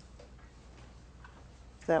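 A few faint, scattered small clicks over a low steady room hum, then a voice begins speaking right at the end.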